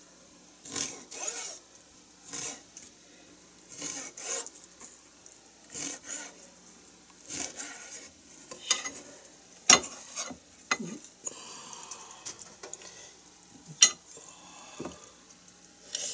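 Kitchen knife slicing a raw cutlassfish fillet into sashimi on a plastic cutting board: a string of short, irregular scraping strokes, with a couple of sharper knocks of the blade on the board in the second half.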